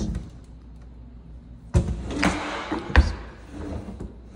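Kitchen cabinet drawer handled: a sharp knock a little under two seconds in, a rubbing slide as the drawer runs out on its runners, then a louder knock about three seconds in as it stops.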